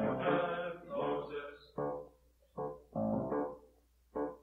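Live choir music: short pitched phrases, each about half a second to a second long, broken by brief gaps, over a faint steady low hum.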